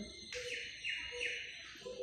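Chalk scraping on a chalkboard as words are written: three short scratchy strokes in quick succession, with a thin high squeal.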